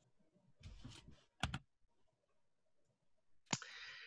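Near silence on a video call, broken by a short soft rustle, two quick sharp clicks about a second and a half in, and another click with a soft hiss near the end.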